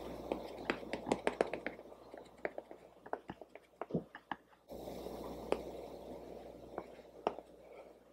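Makeup sponge dabbing foundation onto the face and neck: a series of faint, irregular soft taps, busiest in the first couple of seconds and sparser afterwards.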